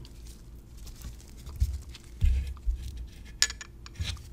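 Handling noise from lab glassware: a couple of soft thumps and then a sharp light clink as a water-filled graduated cylinder is picked up and tilted.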